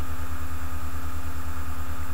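A steady low hum pulsing evenly about ten times a second, with a faint hiss over it: the background drone of the room recording.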